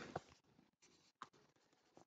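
Near silence with a few faint scratches and taps of a stylus writing on a tablet screen.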